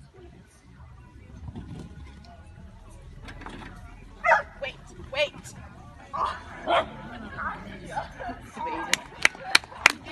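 A dog barking, a handful of short high barks about four to seven seconds in. Near the end, hands start clapping in quick sharp claps.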